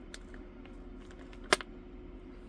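Small clicks from handling diamond-painting supplies while the next drill colour is got ready, with one sharp click about one and a half seconds in, over a faint steady hum.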